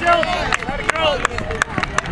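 Mostly voices: speech from the commentators and spectators, with a few sharp clicks scattered through it.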